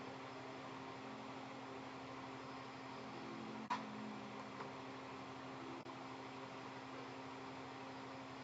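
Faint steady background hum and hiss of room tone, with one brief soft click about three and a half seconds in.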